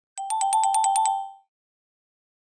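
Cartoon sound effect: a short electronic ringing trill, two close tones pulsing rapidly at about eight a second for just over a second before cutting off.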